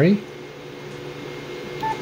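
A single short electronic beep from the Yaesu FT-991A transceiver near the end, its key-press confirmation tone as the A-M (VFO-to-memory) key is pressed to store a frequency. A steady hum runs underneath.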